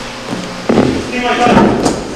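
Indistinct voices shouting in a large room, with a sudden thump about two-thirds of a second in.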